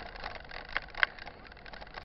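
Mountain bike rolling along a dirt road: steady rolling noise, with two short sharp clicks a little under a second in and just after.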